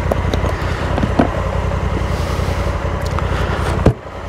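A vehicle engine idling steadily close by, with a few light clicks from a key being worked in the lock of an aluminium motorcycle top box.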